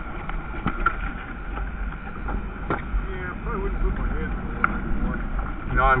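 Steady low wind rumble on the microphone, with a few light knocks and a brief faint voice about three seconds in.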